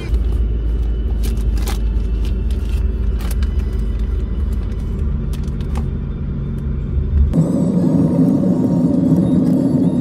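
Low road rumble inside a moving car's cabin, with a few light clicks. About seven seconds in, the rumble cuts off and gives way to a denser, mid-pitched sound.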